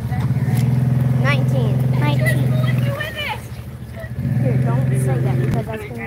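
Side-by-side UTV engine given throttle twice in deep mud, each time held at steady high revs for a couple of seconds before dropping back to idle.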